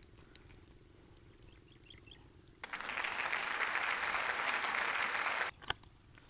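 A steady rustling, scraping noise lasting about three seconds that starts and stops abruptly, followed by a sharp click.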